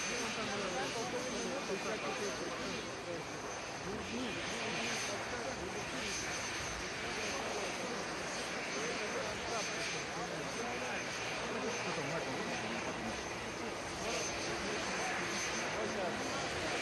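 Steady noise of helicopter turbine engines running, with a thin high steady whine above it, under the voices of the recovery crew at work.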